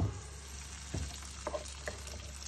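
Minced garlic frying gently in oil in a nonstick pan as a wooden spoon drops fava bean purée in and stirs it, with a sharp knock of spoon on pan right at the start and a lighter one about a second in.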